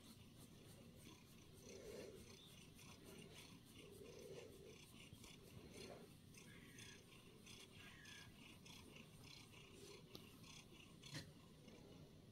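Faint purring from a domestic cat being stroked, swelling and fading in slow waves about every two seconds. A single soft click comes near the end.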